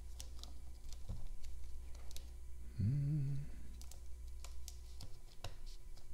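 Light scattered clicks and handling noise as small plastic Grove cable connectors are plugged into a GrovePi+ board and the wires are arranged, over a steady low hum. A short murmured voice sound comes about halfway through.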